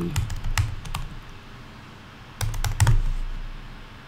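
Typing on a computer keyboard: a quick run of key clicks, a pause of about a second and a half, then another short run of clicks about two and a half seconds in.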